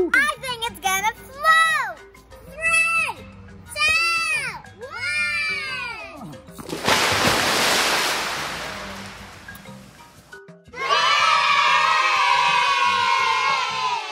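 Children whooping excitedly, a string of rising-and-falling 'woo's. About seven seconds in, a basket of tennis balls tipped into a swimming pool makes a splash that fades over a few seconds. Near the end comes a loud, held cheer from several voices, over light background music.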